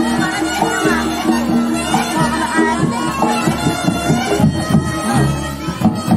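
Reog ensemble music: a shrill, reedy slompret (Javanese shawm) plays a wavering melody over drumming and sustained gong-chime tones.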